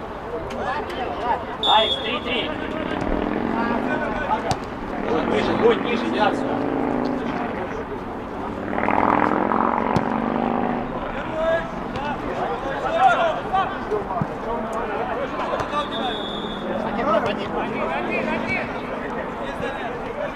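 Indistinct shouts and calls from players on an outdoor football pitch, with a few sharp knocks scattered through.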